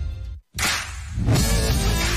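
Music cuts off into a split second of silence, then a sharp whoosh transition effect hits and fades. A television bumper's music kicks in behind it.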